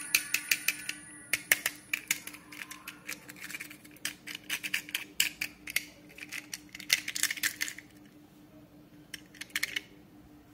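Small toy bulldozer being handled in the fingers: quick runs of sharp clicks and rattles from its small plastic and metal parts, in bursts with short pauses.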